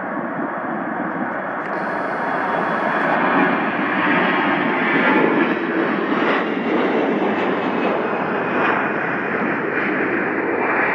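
Two CF-18 Hornet fighter jets taxiing, their twin General Electric F404 turbofan engines running with a steady jet noise and a faint whine. The noise grows louder about three seconds in.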